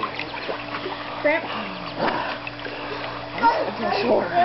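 Water splashing in a swimming pool's shallow end as a toddler and an adult move about in it, with a few short voice sounds breaking in, about a second in and again near the end.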